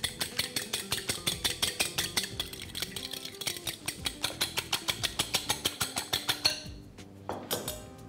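A fork beating eggs in a glass bowl, clinking quickly and evenly against the glass, about six strokes a second. The beating stops about six and a half seconds in, and a few lighter taps follow.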